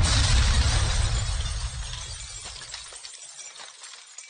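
Outro sound effect: a sudden crash with a deep rumble and a crackling, shattering tail that fades away over about three to four seconds.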